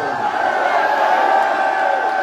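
Large rally crowd cheering in one long held shout, swelling to its loudest a little past the middle.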